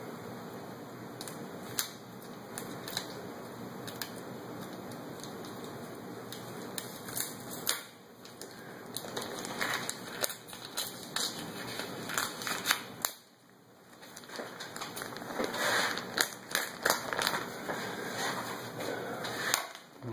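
Plastic bacon package being opened and handled: irregular crinkling and sharp little clicks over a steady background hiss, with a brief gap about two-thirds of the way through.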